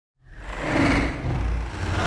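A low, engine-like rumble used as a sound effect to open the track. It fades in out of silence and swells twice.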